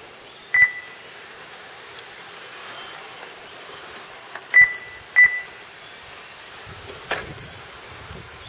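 Three short high beeps from the lap-timing system as cars cross the line: one about half a second in and two close together around four and a half and five seconds in. Under them runs the faint high whine of RC touring cars' motors, rising and falling as the cars lap the track.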